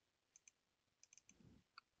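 Near silence, with a few faint computer mouse clicks while a shape is drawn on screen.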